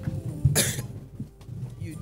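A single short cough picked up by a stage microphone, about half a second in.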